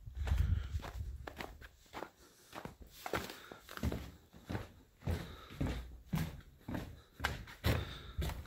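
Footsteps climbing wooden deck steps and walking across a wooden deck, a thud at each step at a steady walking pace of about two steps a second.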